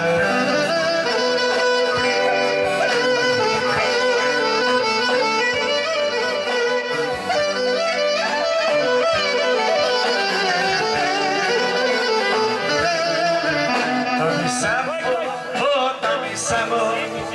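Live Greek folk dance music from a band: an instrumental passage with a violin carrying a wavering melody.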